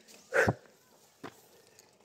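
A single short, loud, breathy huff from a person climbing steep concrete steps, with a faint tap about a second later.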